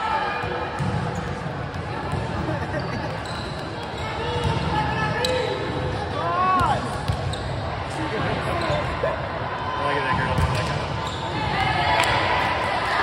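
Volleyballs bouncing on a hardwood gym floor, with the voices of players and spectators echoing in a large hall.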